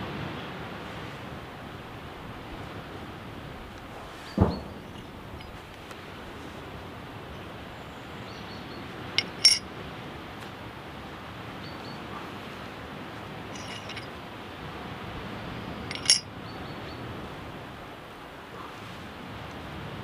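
Steady outdoor background hiss while a grey squirrel is skinned by hand on a flat stone, with a few brief clicks and clinks of handling: a soft knock about four seconds in, a pair of sharp clicks around the middle, and another click later on.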